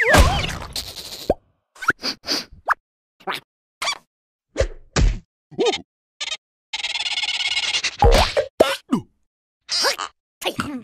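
Cartoon slapstick sound effects: a string of short whacks and plops with silent gaps between them, mixed with short gliding squeaks and yelps from the cartoon larvae. A sustained noisy sound lasts about a second a little past halfway.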